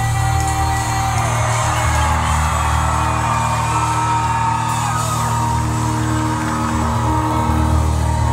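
Live band music: sustained keyboard chords over a steady, held low bass note, with the crowd yelling and whooping over it.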